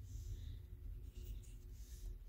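Laminated tarot cards sliding and brushing against one another as they are moved by hand: a few faint, soft swishes.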